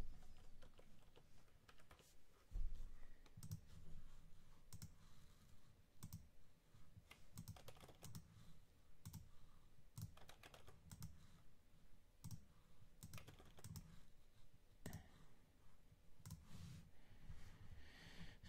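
Faint, irregular typing and clicking on a computer keyboard, with scattered quick keystrokes and a soft thump about two and a half seconds in.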